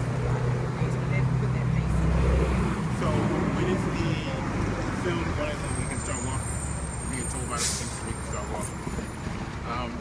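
Street traffic, with a heavy vehicle's engine running close by as a low rumble for the first two to three seconds before it eases off, and a brief hiss about three-quarters of the way through.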